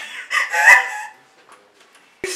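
A woman laughing hard, a few quick, shrill laughs in about the first second.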